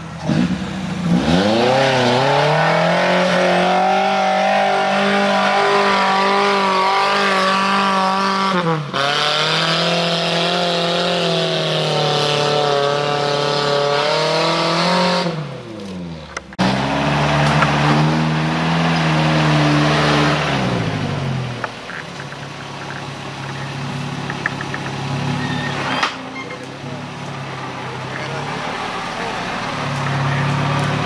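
Engines of modified Suzuki Vitara 4x4s on big mud tyres revving hard under load as they climb a mud track, the pitch swelling and falling over several seconds at a time, with a hiss over it. The sound breaks off abruptly a few times. In the last third the engine runs lower and lighter.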